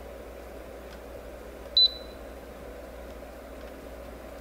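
Okaysou H13 True HEPA air purifier's control panel giving one short, high electronic beep about two seconds in as a touch button is pressed, over the steady hum of its running fan.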